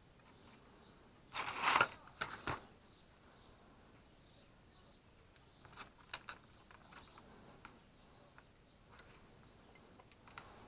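Handling noises on a wooden workbench: a short scrape about a second and a half in, followed by two sharp knocks. Then a cluster of small clicks around six seconds in, as a charger circuit board is set down and multimeter test leads are picked up.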